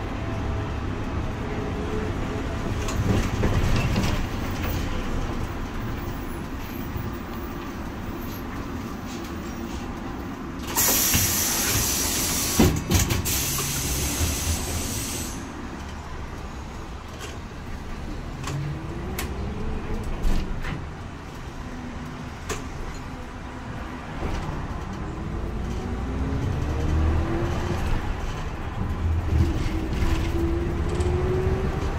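City bus interior: low engine and road noise, broken about ten seconds in by a loud hiss of compressed air from the bus's pneumatic brakes, lasting about four seconds as it pulls up. Later, the motor's pitch rises several times as the bus moves off and gathers speed.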